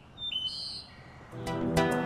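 A few short, high bird chirps, then music coming in about a second and a half in, with sustained notes and a beat, growing louder.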